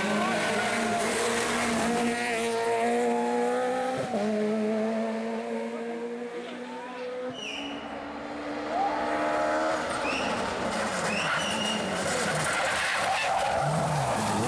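Peugeot 208 rally car running at high revs under full throttle, pitch climbing and then stepping down at gear changes, with the tyres hissing and skidding on gravel. The engine sound drops away a little before halfway, then comes back as the car approaches again and passes close near the end.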